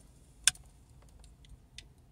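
A single sharp click about half a second in, then a few faint ticks: a micro-USB charging cable being handled and its plug pushed into place to charge a pair of Bluetooth headphones.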